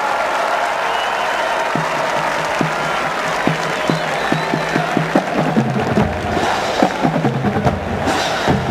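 Stadium crowd applauding and cheering, then the marching band's drumline starts about two seconds in: single drum strokes at first, coming faster and closer together, with deep bass drum hits joining about six seconds in.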